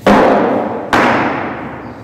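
Two loud knocks just under a second apart, each fading away over about a second.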